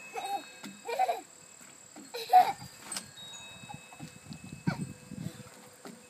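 A young child's short vocal calls, three in quick succession, the third the loudest, over the faint steady ringing of wind chimes. Later come a few soft thumps of small feet on a wooden deck.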